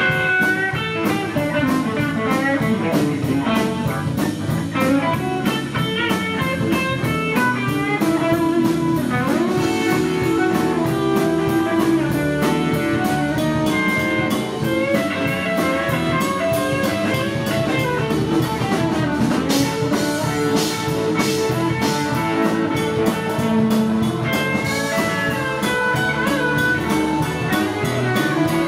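Live blues band playing an instrumental passage: electric guitar lead lines of quick notes over electric bass and drum kit.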